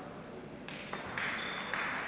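Table tennis rally: the ball clicking off the table and the bats in quick alternation, with a hit about every half second starting about two-thirds of a second in, ringing briefly in a large hall.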